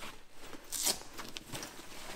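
A rolled fabric pull-out shower enclosure being unstrapped by hand: fabric rustling, louder about three quarters of a second in, with a few small clicks after it.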